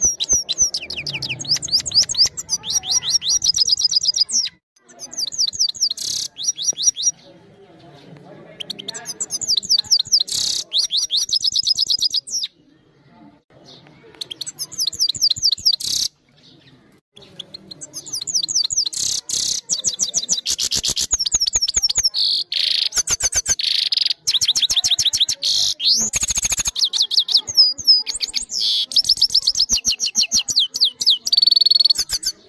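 Caged European goldfinch singing: phrases of fast, high twittering and trills, broken by a few short pauses in the first half.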